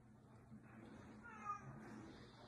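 A domestic cat gives one short meow about one and a half seconds in, over a faint low room hum.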